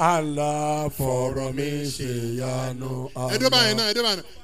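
A man chanting in long held notes into a handheld microphone.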